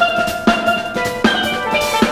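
Live instrumental music: steel pan playing a melody of struck, ringing notes over a drum kit and electric bass, with sharp drum hits about every half second.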